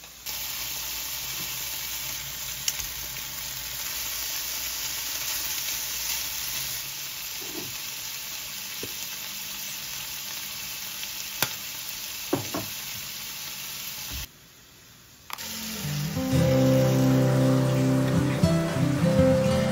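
Cubes of beef sizzling as they sear in a non-stick frying pan: a steady hiss with a few sharp clicks. The sizzle cuts off suddenly about three quarters of the way through, and acoustic guitar music comes in near the end.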